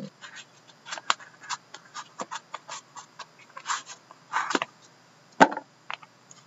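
Handling of a trading-card box and its card pack: a run of small irregular taps, clicks and rustles as the pack is worked out of the box, with a sharper knock about five and a half seconds in.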